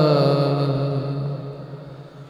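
Shabad kirtan: men's singing voices over harmonium hold the last note of a phrase, glide down in pitch and fade away over about a second and a half.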